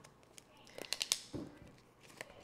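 Handling noise as a small item is picked up: a quick run of light clicks with a crinkly rustle, then a soft thump about a second and a half in.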